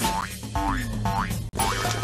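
Instrumental bars of a children's TV theme song, with a springy, boing-like rising slide repeating about every half second over a steady low backing.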